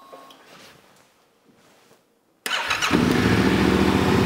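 Yamaha Ténéré 700's 689 cc parallel-twin engine started on the electric starter. About two and a half seconds in it cranks briefly, catches within about half a second and settles into a steady idle. This is its first start after a remapped ECU and an open rally air filter were fitted.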